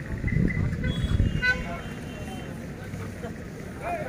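Background voices, with a brief, high horn toot about one and a half seconds in.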